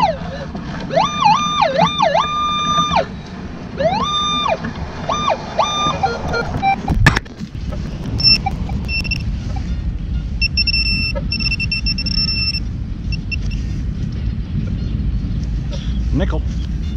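Minelab Equinox metal detector giving a target signal: pitched electronic tones that glide up, hold steady and glide down again, over and over as the coil passes back and forth across the target. About seven seconds in a digging tool knocks into the turf, and higher steady beeps then come and go as the dug soil is searched.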